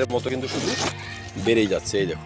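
A voice speaking, with soft background music underneath.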